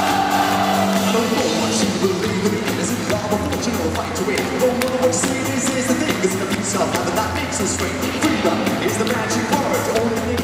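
Live pop-dance music from a band with drum kit and electric guitar, played loud through an arena PA, with a steady fast beat.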